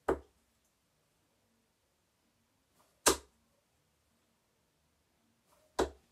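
Three 23-gram tungsten steel-tip darts (Unicorn Gary Anderson Phase 4) striking a dartboard one after another: three sharp thuds about three seconds apart, each throw landing in the board.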